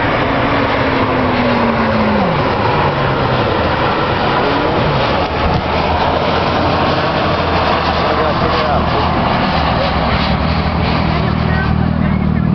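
Steady highway traffic noise from cars passing close by, with one vehicle's pitch falling as it goes past in the first couple of seconds.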